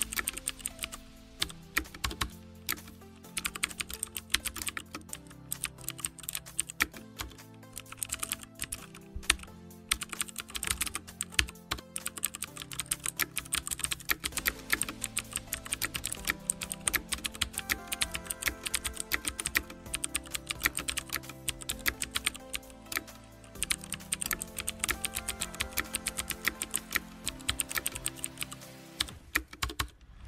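Rapid, continuous keyboard clicks from typing on an iPod touch's on-screen keyboard, over background music of held notes.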